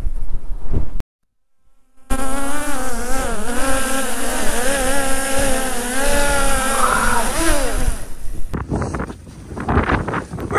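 Quadcopter drone's propellers buzzing close by, the pitch wavering up and down as the motors hold it in the air. Near eight seconds in the pitch drops away as the motors spin down.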